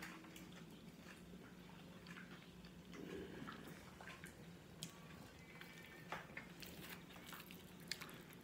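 Faint eating sounds close to the microphone: chewing and a few small sharp clicks, over a low steady hum.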